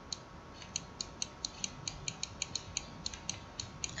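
Faint, irregular light clicking, about twenty quick clicks over a few seconds, from the pen or mouse input as handwriting is entered on a computer.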